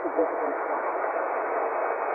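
Shortwave static from a Tecsun PL-990 receiver's speaker in upper-sideband mode: an even, muffled hiss in the pause between phrases of a Shannon VOLMET aviation weather broadcast. The announcer's voice trails off in the first half-second.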